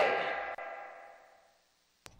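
The last sung note of a two-part harmony vocal line, saturated through FabFilter Saturn 2, ringing out and fading away over about a second and a half into silence.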